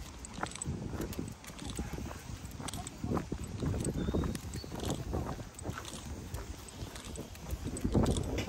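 Footsteps of a person and a leashed dog walking on a paved path, irregular steps over a steady low rumble.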